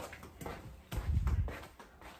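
Handheld phone being moved about while its holder walks: a few light knocks and rubbing on the phone, with a low thump, the loudest sound, about a second in.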